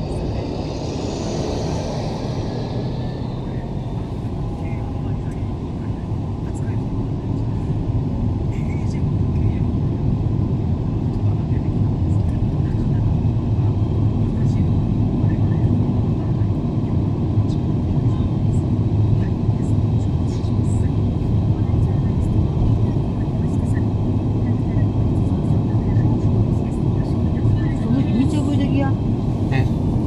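Steady road and engine noise heard inside a moving car's cabin on an expressway. It grows a little louder about ten seconds in, with a brief higher hiss in the first few seconds as a truck runs alongside.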